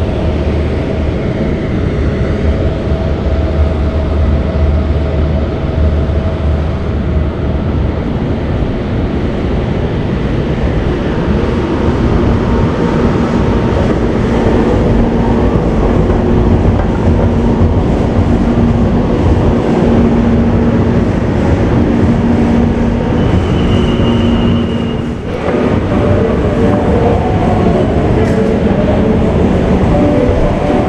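Inclined moving walkway (travelator) running, heard from on board: a steady mechanical rumble. A low, even hum joins it about twelve seconds in.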